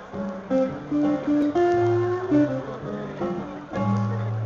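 Acoustic guitar played solo, picking a melody of single notes over lower bass notes.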